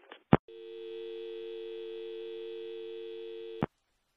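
A telephone receiver is picked up with a sharp click, then a steady two-note dial tone sounds for about three seconds and is cut off by a click.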